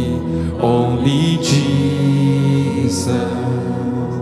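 Live worship music: a male lead vocal singing over sustained band accompaniment.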